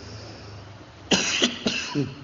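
A man coughing two or three times, starting about a second in, over a faint low hum.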